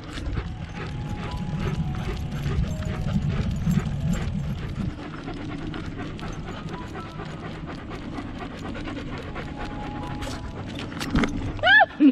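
Dogs panting hard as they run on leash beside a moving bicycle, with a low wind rumble on the microphone for the first few seconds. Near the end come a few loud, short, high-pitched calls.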